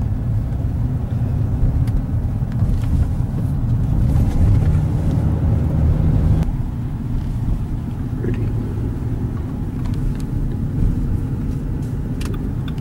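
Low, steady rumble of a car's engine and tyres heard from inside the cabin while driving through city streets, easing slightly about six and a half seconds in.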